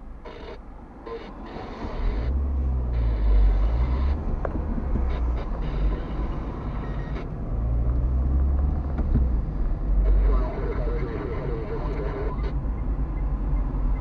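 A car's engine heard from inside the cabin as it pulls away from a standstill and accelerates. It gets much louder about two seconds in, and its note rises and drops a couple of times with the gear changes.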